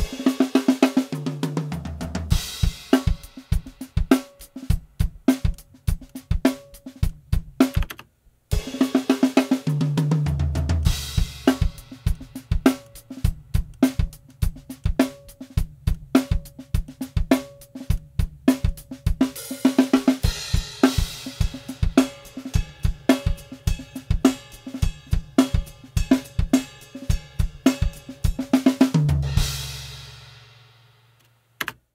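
Multitrack acoustic drum kit recording playing back: a steady groove of kick, snare, hi-hat and cymbals, with tom fills stepping down from rack tom to floor tom about a second in, about ten seconds in and near the end. The raw tracks are being panned and balanced with faders, not yet EQ'd or compressed. Playback stops briefly about eight seconds in and starts again.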